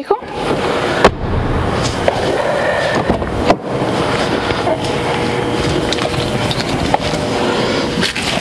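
Rumbling, rubbing handling noise of a hand-held camera being carried around a car, with a sharp knock about a second in and a few lighter clicks.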